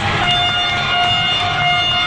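A single steady horn blast on one held pitch with overtones, lasting about a second and a half over the noise of a crowd.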